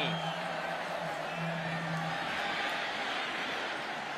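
Large stadium crowd cheering steadily as a football play runs, a continuous wash of many voices, with a low steady hum under it for the first two seconds or so.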